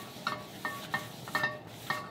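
Blanc Creatives 11-inch carbon steel skillet being wiped with an oiled paper towel in quick strokes, each stroke bringing a brief metallic ring from the pan, about five times. This is a thin coat of oil going onto the hot pan while it is being seasoned.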